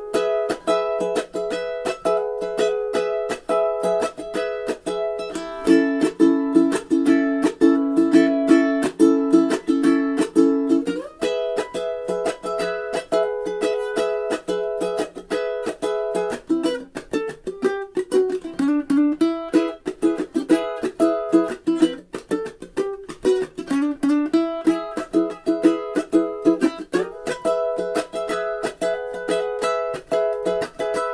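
Kamaka HF-3L long-neck tenor ukulele played solo, an instrumental surf tune picked as a steady stream of quick notes.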